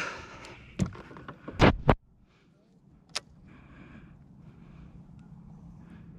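A few knocks, the loudest a heavy thump just under two seconds in, then a faint steady hiss with a single sharp click.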